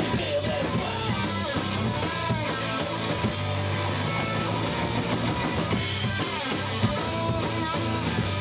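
Rock band playing live: a drum kit with bass drum and electric guitar, full band playing steadily.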